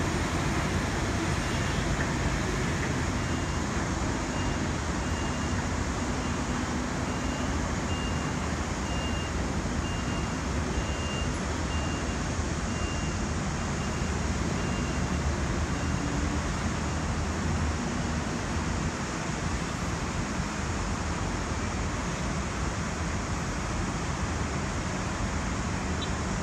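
Steady roar of city traffic, even and unchanging, with a faint repeating high beep through the middle.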